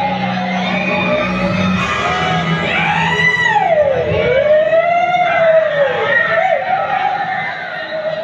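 A loud, siren-like wailing tone that swoops slowly up and down, about a second per sweep, over a low steady hum that fades out partway through. It plays as part of the performance's dramatic sound accompaniment.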